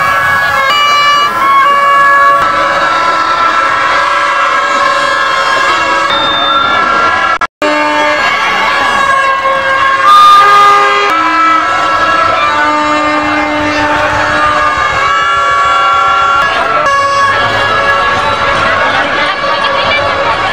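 Many toy horns and whistles tooting at different pitches, each note held a second or so and overlapping, over crowd chatter; the sound cuts out for an instant about halfway through.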